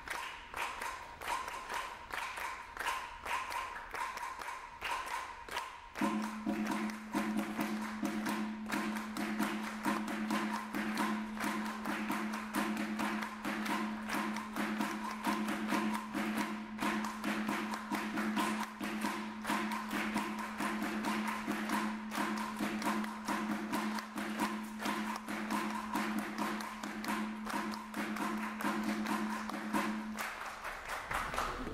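Live percussion duet: a fast, dense stream of strikes on congas and other drums. About six seconds in, a low sustained tone enters under the strikes and holds steady.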